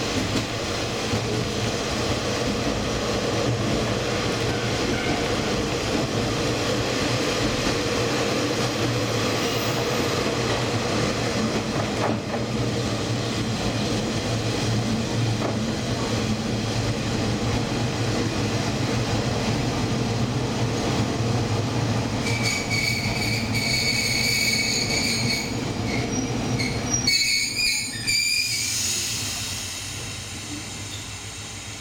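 Diesel train running along the rails with a steady rumble, then a high-pitched squeal in the last third as it brakes into a station. Near the end the running noise drops away.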